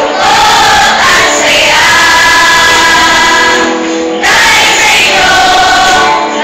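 A large group of young voices singing together in chorus, holding long notes, with a short break just before four seconds before the singing picks up again.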